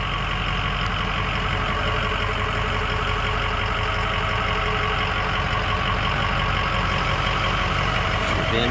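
Ford 6.0-litre Power Stroke V8 turbo diesel idling steadily, a continuous even rumble with a fine, regular diesel clatter.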